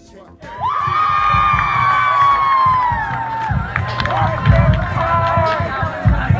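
A crowd cheering and shouting, led by one long high yell that starts about half a second in and trails off after a couple of seconds. Shorter shouts follow over low thumps of music.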